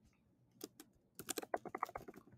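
Typing on a computer keyboard: a couple of keystrokes about half a second in, then a quick run of keystrokes in the second half.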